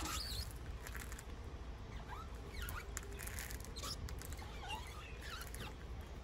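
Rubber squeegee blade drawn across wet, soapy window glass, giving a few faint short squeaks as it glides over the pane.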